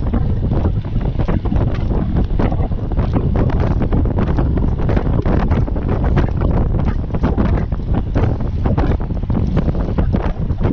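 Wind buffeting the microphone of a camera carried on a moving road bike: a loud, steady low rumble with constant rapid flutter.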